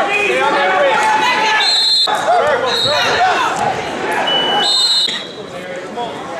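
Many voices of spectators and coaches shouting over each other in a large gym hall during a wrestling bout, with a few short high squeaks about two, three and five seconds in.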